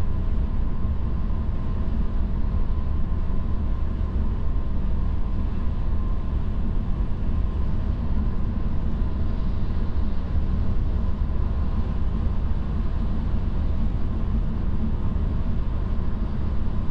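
Steady low road rumble inside a Tesla's cabin at highway speed, the tyres running on a snow-covered road, with a faint steady high tone over it.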